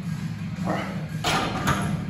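A man straining through a heavy barbell bench-press rep, letting out a few short, forceful grunts and exhales.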